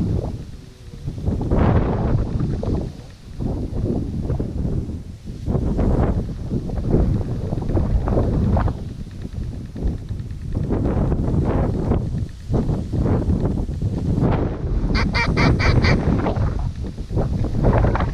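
Ducks and geese calling: repeated quacks and honks as a flock works toward the decoys. Near the end comes a quick run of short, high, evenly spaced notes.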